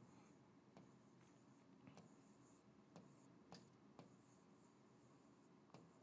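Near silence with faint, scattered ticks of a stylus tapping and writing on a touchscreen board, about half a dozen light taps.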